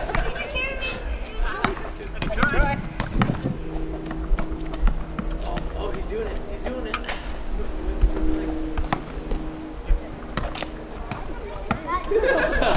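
A basketball bouncing on asphalt, sharp knocks at irregular intervals as it is dribbled and thrown, over a faint steady hum and background children's voices.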